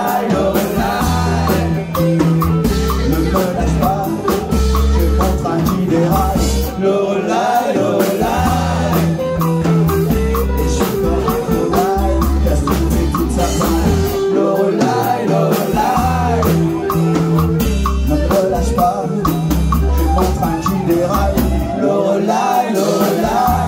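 Live rock band playing a song: electric guitars over a drum kit, with a sung vocal. The music runs loud and steady.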